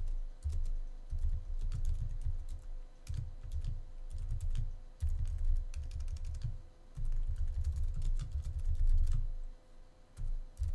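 Typing on a computer keyboard: runs of quick keystrokes, each a sharp click with a dull thud, with short pauses between bursts. A faint steady hum runs underneath.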